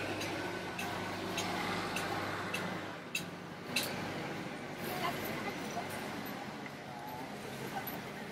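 Outdoor stall background: a low steady hum that drops away about three seconds in, with scattered light clicks and rustles from plastic bags and fruit being handled.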